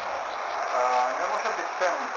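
A short stretch of a person's voice over a steady background hiss.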